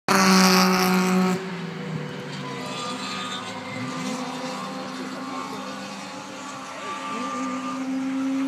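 Two-stroke SAAB race car engines running at speed. One loud engine holds a steady note for about a second and a half, then drops away suddenly. Several more distant engines follow, rising and falling in pitch, and one grows louder near the end as it approaches.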